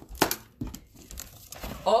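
Scissors snipping through the plastic strapping and tape on a cardboard shipping box, with a sharp cut about a quarter second in and a smaller one just after, then cardboard and plastic rustling as the box is opened.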